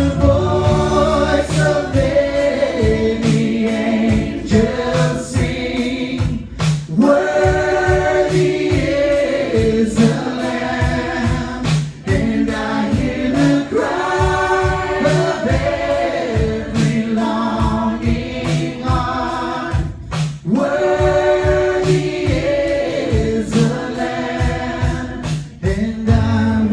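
Live worship band playing a slow song: voices singing a held melody together over guitar and a steady drum beat.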